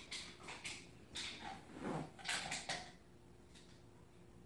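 A dog opening a refrigerator door by a rope on its handle and taking out a water bottle: a run of knocks, rattles and rustles over about three seconds, loudest around two seconds in.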